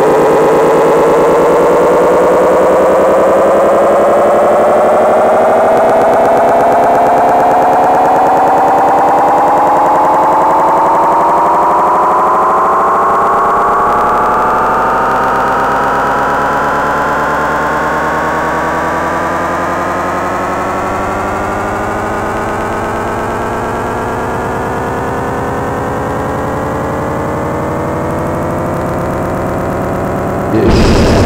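Experimental electronic music: a synthesizer drone whose stack of tones glides slowly and steadily upward in pitch, over a low steady hum, growing a little quieter after the midpoint.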